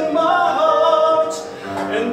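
A man singing a slow Christian worship song into a microphone, holding long notes.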